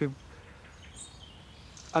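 Quiet outdoor background noise with a single faint, short bird chirp about a second in.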